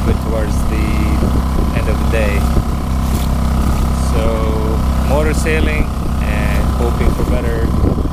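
A sailboat's motor runs steadily under way with a low drone, while a man talks over it.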